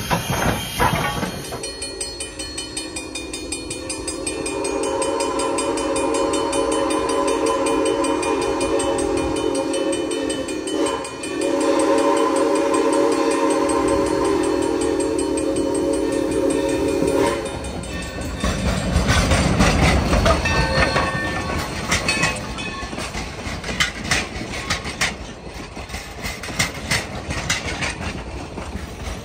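A steam locomotive's chime whistle sounds two long, chord-like blasts, the second starting about 11 seconds in. The train then rolls past with a rumble and the clickety-clack of the coaches' wheels over the rail joints.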